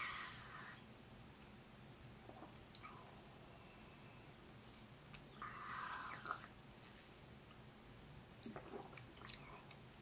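A man drinking juice from a small bottle: quiet sips and swallows, with a breath through the nose at the start and another around six seconds in, and a few small sharp clicks between them.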